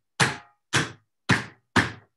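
A ski pole striking a ski binding four times, about every half second: sharp knocks as the binding's springs are worked over and over, a way to bust ice out of an iced-up binding.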